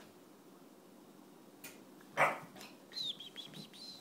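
Puppies play-fighting. About halfway through one gives a sharp yap, then in the last second a high, thin squeal with several quick drops in pitch.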